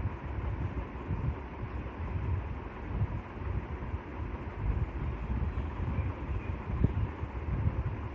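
Uneven low rumbling background noise with a light hiss and a faint steady hum picked up by the lecturer's microphone, with no speech.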